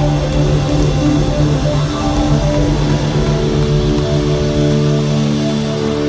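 Live band playing loud: electric guitars, accordion, bass and drums together, with long held notes that move to a new chord about halfway through.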